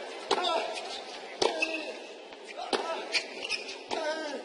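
Tennis rally on a hard court: the ball is struck with rackets four times, about every 1.2 seconds, each hit followed by a short grunt from the player.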